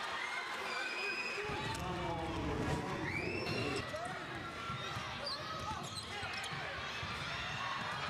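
Live basketball game sound on a hardwood court: a ball dribbled, short high sneaker squeaks and a murmur of crowd and player voices.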